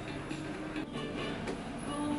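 Soft background music with held notes, with a couple of faint clicks about a second in and near the middle-end.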